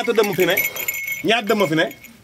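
A voice speaking in two short phrases, over a light metallic jingling and clinking.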